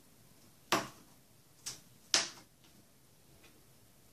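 Three short, sharp clicks of hand craft work on a board at a tabletop, pressing metal brads into place: one just under a second in, a fainter one at about one and a half seconds, and the loudest shortly after two seconds.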